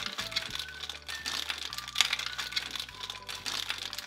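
Crinkling of a blind-box toy's wrapper bag being pulled open by hand to get the figure out, in many short irregular crackles, over background music.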